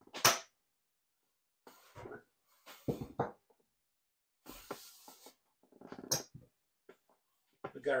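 Casino chips clicking and clacking as they are picked up and set down on a felt craps layout. There are a few sharp clicks, one near the start and one about six seconds in, with softer sliding and handling sounds between them.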